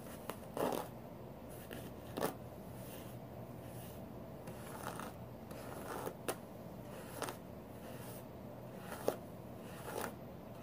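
Hairbrush bristles pulled through long hair: short brushing strokes at an uneven pace, roughly one every second, over a faint steady room hum.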